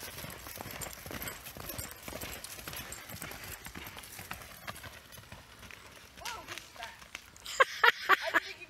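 A horse's hooves beating on the sandy, grassy arena ground at a canter, a quick run of hoofbeats that grows fainter as the horse moves away. Near the end a voice and a few sharp knocks are loudest.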